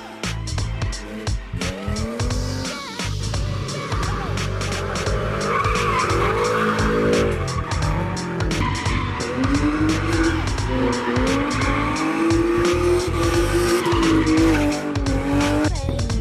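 A drift car's engine revving up and down as it slides through a corner, with its tyres squealing. The revs hold high through the second half and drop away just before the end. Music with a beat plays underneath.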